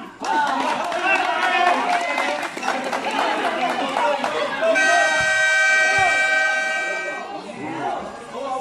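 Spectators talking and shouting around a basketball court, then a basketball game horn sounds, one steady blast of about two and a half seconds starting near the middle, the loudest sound here.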